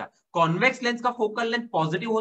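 Only speech: a man talking in Hindi, with a short pause near the start.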